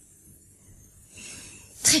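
Quiet room tone, then a faint breathy rush about a second in that ends in a sudden loud, breathy burst of voice near the end as a person starts to speak.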